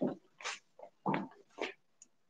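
A few scattered hand claps, about five short, separate claps at uneven spacing.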